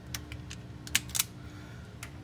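A few sharp clicks from hand work on the fuel pump's ground wire, the loudest two just after a second in, over a steady low hum.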